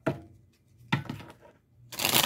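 Two short knocks about a second apart as a deck of oracle cards is handled and tapped against the tabletop.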